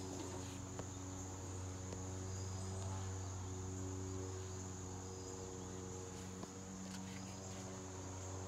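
Crickets chirping in a continuous high trill, over a steady low hum.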